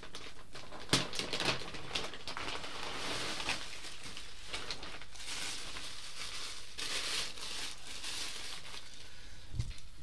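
Packaging crinkling and rustling as a football shirt is pulled out of it by hand, with a sharp click about a second in.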